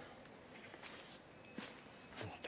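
Faint footsteps on grass and soil, a couple of soft steps.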